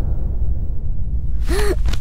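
A woman gasps once, sharply, about one and a half seconds in, her voice rising and falling in pitch. A steady low rumbling drone from the film's soundtrack runs underneath.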